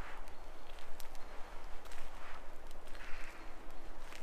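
Footsteps on a flagstone garden path, slow steps about once a second with small scuffs and clicks, over a steady outdoor hiss and low rumble.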